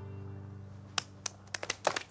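A held chord of background music fading out. Then a few scattered hand claps start about a second in and grow into brief light clapping near the end.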